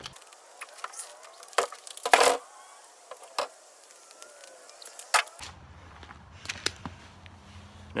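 A few sharp knocks and thumps, the loudest a clatter about two seconds in, as a plastic sit-on-top kayak is handled and loaded onto a car roof.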